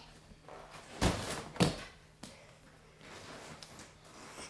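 Two dull thuds about a second in, a little over half a second apart: a barefoot child jumping from a foam plyo box stack and landing on a stack of padded gym mats.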